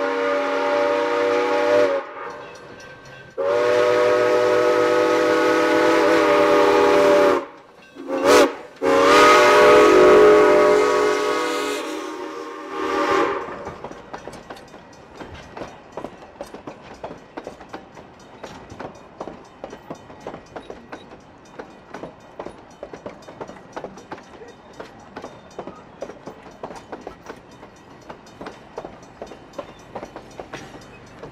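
Narrow-gauge steam locomotive's chime whistle blowing four loud blasts, long, long, short, long: the grade-crossing signal. After that, a steady run of clicks as the coaches' wheels roll over the rail joints past the trackside.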